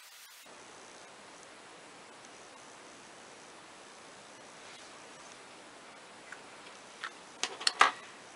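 Faint steady hiss of room noise, with a few sharp clicks in the last second.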